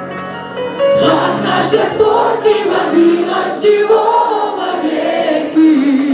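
Live worship song: a small group of female and male vocalists singing a melody through microphones over steady held backing chords.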